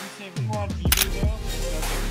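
Background music with a single sharp camera shutter click about a second in; the music thins out briefly at the very start, and falling swoops in pitch run through it.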